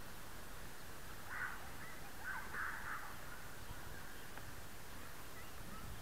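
A few faint bird calls in a short cluster, about one to three seconds in, over steady outdoor background noise.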